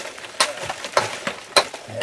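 Steel hand tool striking hard rock as ore is chipped from a tunnel wall: three sharp blows, evenly spaced a little over half a second apart.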